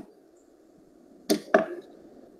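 Two short, sharp knocks about a quarter of a second apart, over a faint steady hiss.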